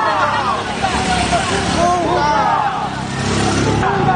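Many voices shouting and talking over one another in a moving street crowd, with a motor vehicle's engine running underneath, most noticeable in the second half.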